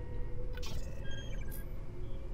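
Sci-fi computer data-access sound effect: a short burst of electronic chattering about half a second in, followed by a few quick high beeps, over a steady low hum of ship ambience.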